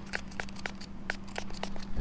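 Rapid, irregular small clicks and crackles, about six a second, from hand work on a tire's sidewall patch, over a faint steady hum.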